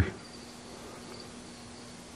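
Quiet shop room tone: a faint steady low hum under a soft hiss, with a faint high-pitched line coming and going.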